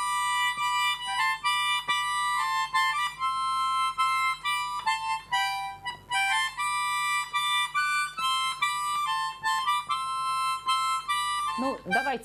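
A tiny Russian 'cherepashka' garmoshka (a small button accordion) played by hand: a quick, high-pitched reedy tune with chords. It pauses briefly about halfway and stops just before the end.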